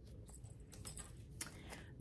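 Faint handling noises: a few soft clicks and rustles of a paper pattern sheet and a small stitched pillow being moved in the hands.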